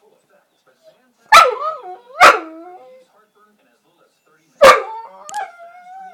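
Boxer–Rhodesian Ridgeback mix dog 'talking': three loud bark-like calls, two close together about a second in and one near the end. Each starts sharply and slides down in pitch into a drawn-out moan, and the last trails off into a wavering whine.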